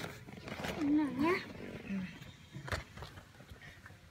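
A person's voice making one short sound with a wavering pitch about a second in, followed by a sharp click a little before three seconds.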